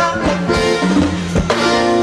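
Live band music in an instrumental passage of a Latin dance number: drum kit beating steadily under sustained melody instruments, with no singing.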